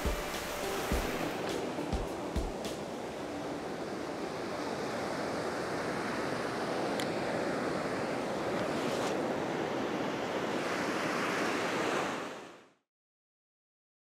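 Sea surf washing and breaking in the shallows, a steady wash of noise with a few low thumps in the first seconds; it fades out shortly before the end.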